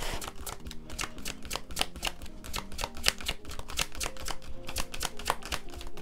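A deck of cards being shuffled by hand: fast, steady clicking and flicking of the cards, over soft background music.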